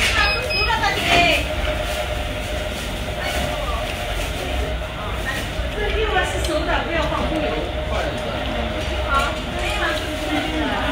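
Restaurant room noise: indistinct voices of other diners chatting over a steady low rumble and hum.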